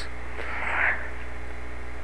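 Steady low electrical hum with a hiss, the background noise of the narration recording, with a faint brief rush of noise about half a second in.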